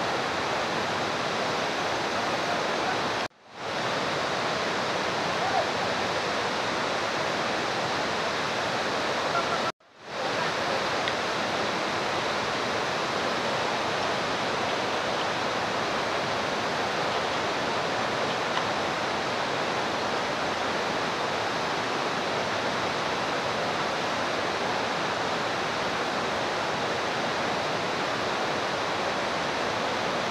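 Steady, even rushing noise that cuts out for a moment twice, about three and ten seconds in.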